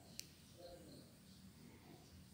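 Near silence, with one faint click about a fifth of a second in.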